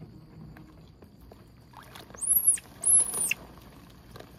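Two short, very high-pitched animal squeals, each rising and then falling in pitch, one right after the other about halfway through.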